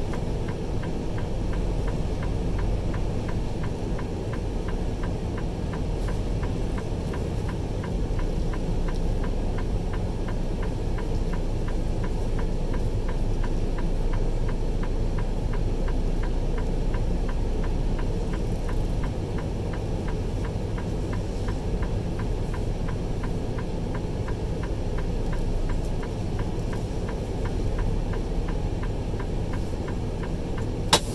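Cabin of a vehicle rolling slowly: a steady low engine and road rumble, with a fast, even, light ticking running through it.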